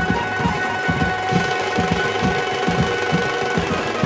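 A Marathi banjo party band playing live: the electric Indian banjo (bulbul tarang) carrying the melody with keyboard, over a fast, steady beat of snare drums, bass drums and drum kit.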